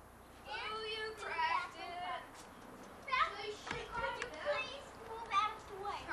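Young children's high-pitched voices calling and chattering at play, with no clear words, and a single knock a little before the four-second mark.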